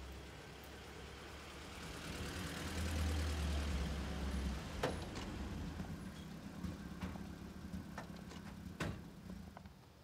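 Car engine running low and steady as the car pulls up, loudest about three to four seconds in, then easing off. A few sharp clicks and knocks of the car door opening and shutting follow from about five seconds on, the loudest near nine seconds.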